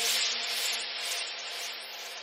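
A hiss-like noise sweep in an electronic deep house mix, slowly fading out over one faint held low tone, with the beat dropped out.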